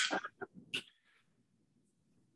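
The end of a spoken word, then a few brief faint sounds such as a breath or mouth noise. After about a second the audio drops to dead silence, as on a gated or muted web-call line.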